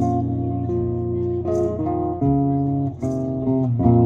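Live acoustic music with no singing: acoustic guitars play an instrumental passage of held notes and changing chords, with a few light djembe hits.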